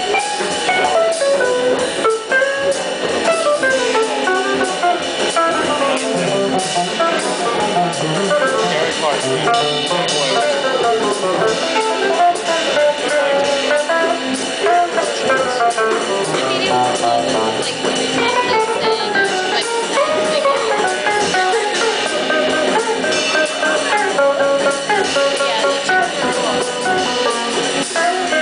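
Live jazz organ trio: an archtop electric guitar plays quick single-note lines over organ and drum kit.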